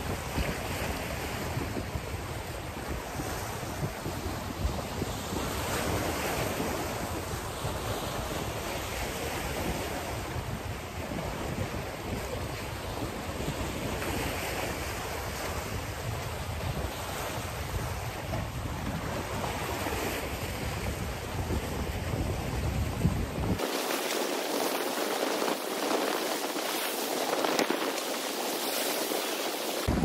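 Small sea waves washing and breaking over rocks, the surf swelling every few seconds, with wind buffeting the microphone. The low wind rumble cuts out suddenly near the end, leaving the surf.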